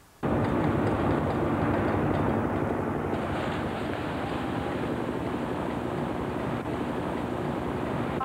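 Helicopters flying overhead: a steady, dense rotor and engine noise that starts suddenly about a quarter second in.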